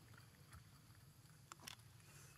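Near silence: faint background hum with a few soft ticks.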